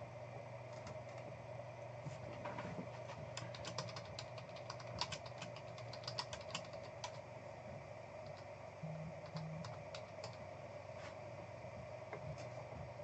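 Faint computer keyboard typing, irregular clicks in short runs, over a steady hum.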